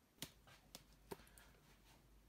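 Near silence with three faint clicks of a charging plug being handled and pushed into a small electric shaver.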